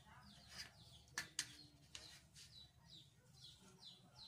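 Faint chirping of small birds: a run of short, high calls that fall in pitch, several a second. Two sharp taps come a little over a second in.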